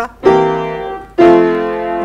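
Piano chords struck twice, about a second apart: the first fades away, the second is louder and left ringing. It is a seventh chord under the melody note G, played to give a big, grand ending to the phrase.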